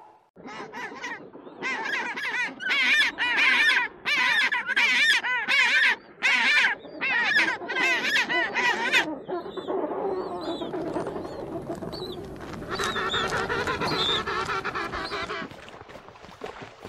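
King penguins calling in a colony: a run of loud pitched calls about two a second for the first nine seconds or so, then a denser din of many birds calling over one another.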